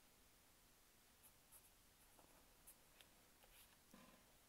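Faint felt-tip pen writing on paper: a few short scratches of the tip from about a second in.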